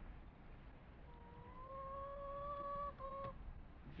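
Quiet outdoor ambience with a low rumble. About a second in, a steady, slightly rising pitched call or tone lasts about two seconds, followed by a short second one.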